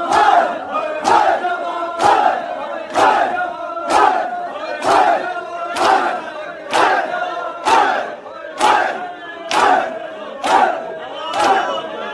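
Crowd of men performing matam, the Shia mourning chest-beat: open hands striking chests together about once a second, over men chanting a repeating rising-and-falling line in time with the blows.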